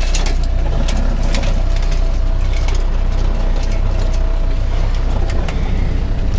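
A boat's outboard motor idling with a steady low rumble and a faint steady whine, over scattered clicks and rattles from the wire crab pot as a crab is pulled out of it.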